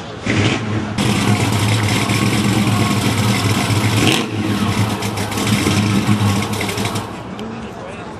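A car engine running close by, loud, with a steady low hum under a wash of noise; it swells about a second in and eases off about seven seconds in.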